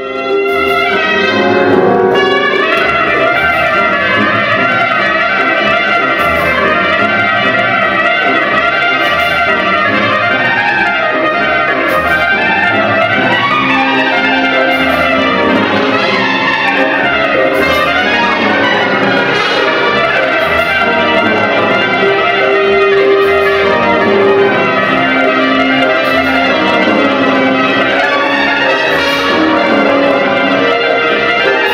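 Solo trumpet playing fast runs over a symphonic wind band's accompaniment, in a concert performance of a trumpet concerto.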